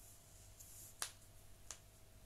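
Near silence: room tone broken by two brief sharp clicks, one about a second in and a fainter one near the end.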